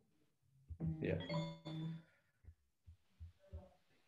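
A man's voice says one short word over a video call, then it is quiet apart from a few faint short clicks.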